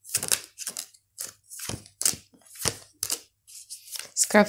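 A deck of tarot cards being shuffled by hand: an irregular run of short papery slaps and rustles as the cards slide against each other, about two a second.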